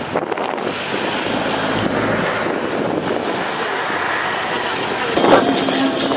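Steady wind rushing over the microphone as an even hiss. About five seconds in it gives way to louder crowd noise.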